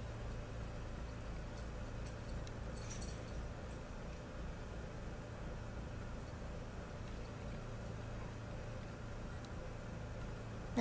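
Quiet room tone: a steady low hum, with a few faint clicks and light jingles about two to three seconds in.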